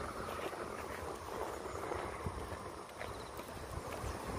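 Footsteps of a person and a small dog walking over grass and paving stones, a few light ticks among them, over a steady outdoor background noise.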